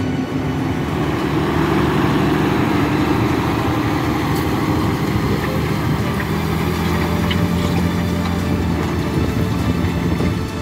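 Tractor engine running steadily, a continuous low drone.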